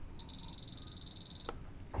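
Soldering station's beeper sounding a rapid run of high beeps for about a second and a half, as the iron's temperature setting is stepped up from a too-low 280 °C toward 360 °C.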